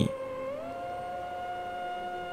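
Background music in a pause of the narration: a held tone with overtones that slides up in pitch about half a second in, then holds steady.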